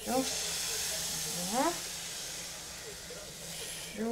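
Crepe batter sizzling as it is poured into a hot, oiled frying pan: a loud hiss that starts at once and slowly fades. A brief rising vocal sound from the cook comes about one and a half seconds in.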